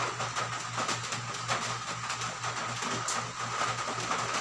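Hands swishing and splashing in a plastic basin of water while being wetted, over a steady low hum.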